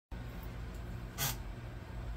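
Low steady hum of running reef-aquarium equipment such as a pump or filter, with one short burst of hiss about a second in.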